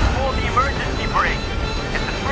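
Film soundtrack: music over a steady low rumble, with brief unclear fragments of a voice.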